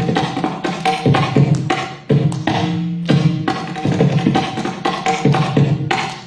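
Music of a mridangam, the South Indian barrel drum, playing a quick run of rhythmic strokes with ringing pitched tones between them.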